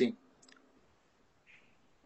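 The end of a spoken "sí", then near silence on the call audio, broken by one faint click about half a second in and a brief soft hiss later on.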